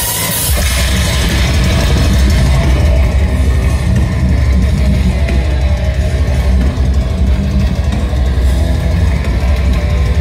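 Metalcore band playing live at full volume, with heavy drums and distorted guitars; the full low end kicks in about half a second in.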